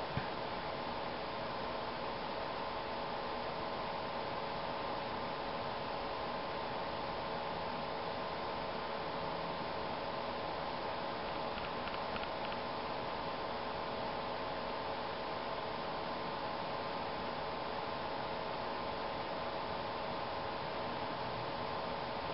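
Steady background hiss with a faint, even hum of a few steady tones, with a few faint ticks about halfway through.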